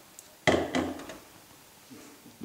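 A single dull knock about half a second in, fading quickly, as of an object set down on a hard kitchen surface.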